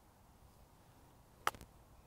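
A 60-degree Tora F-Spec wedge striking a golf ball on an open-faced pitch shot: one sharp click about one and a half seconds in, with a fainter tick right after.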